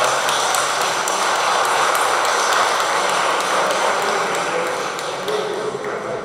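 A group of people applauding, the clapping dying away near the end.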